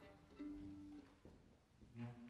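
Faint plucked violin strings: a short note about half a second in and another near the end, each dying away quickly, as a string is checked before playing.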